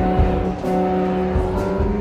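Live band playing an instrumental passage of a gospel song: held chords over a recurring low beat, with no singing yet.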